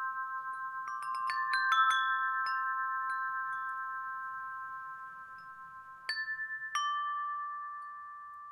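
Chimes struck several times, their clear tones ringing on and slowly fading: a cluster of strikes about a second in, then two more strikes near the end.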